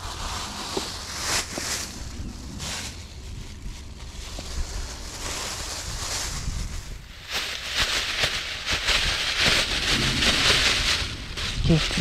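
Thin plastic bag rustling and crinkling as it is handled, busiest in the second half, over a low wind rumble on the microphone.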